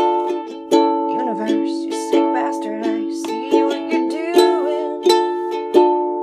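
Solo ukulele strummed in a steady rhythm, each strum a sharp attack that rings out, in a raw home recording made on a phone.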